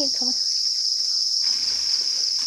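Many farmed crickets chirping together in their pen, a dense, steady, high-pitched trill. A plastic bag rustles faintly through the first second or so.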